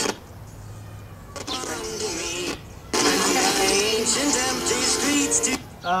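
Music from a radio station picked up by a home-built crystal radio and played through a small speaker. The signal cuts out for about the first second, leaving a low hum, returns, drops out again briefly around three seconds in, then comes back, as the coil tap is changed between stations.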